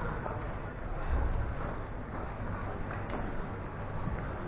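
Busy outdoor town-square ambience: faint distant voices and scattered footsteps over a steady low rumble that swells briefly about a second in.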